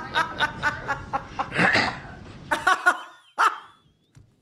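A woman laughing hard: a run of short 'ha' bursts about four a second, a breath drawn in near the middle, then a few more laughs trailing off.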